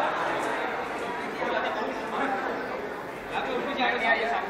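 Indistinct chatter of several people talking over one another, none of it clear enough to make out words.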